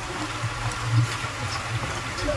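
Low, uneven rumble under a steady haze of water and wind noise on the open deck of a river boat.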